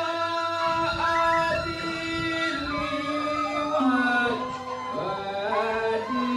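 Balinese genjek music: a male voice singing a melody in long held notes that slide from one pitch to the next, with the group's accompaniment.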